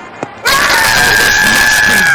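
A faint knock, then a cricket appeal: one loud, high shout held at a steady pitch for about a second and a half over crowd noise, as the fielders appeal for a wicket.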